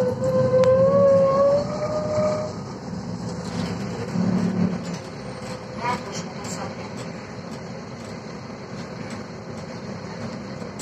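Interior of a 2000 Volvo 7000A articulated bus on the move: a low running rumble throughout, with a steady whine that rises slightly in pitch over the first two seconds and then fades. A short squeak sounds about six seconds in.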